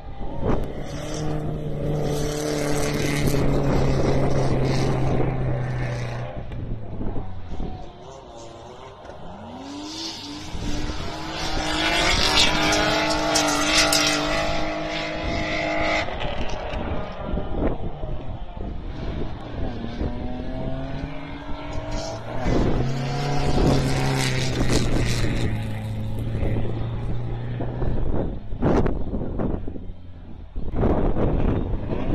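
BMW rally cars' engines revving hard on a dirt sprint track. There are three long runs, each climbing in pitch through the gears, holding and then falling away, with quieter gaps between them.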